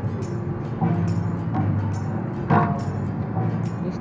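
Long steel strings of a museum string-vibration exhibit plucked and ringing with low, steady tones, plucked again about a second in and once more past halfway.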